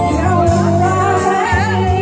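A woman singing into a microphone with a wavering vibrato over a live Yamaha electronic keyboard accompaniment of sustained organ-like chords and bass.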